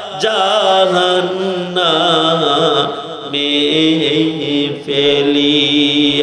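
A man's voice chanting an Arabic supplication into a microphone, with long, wavering held notes that glide between pitches and short breaks for breath.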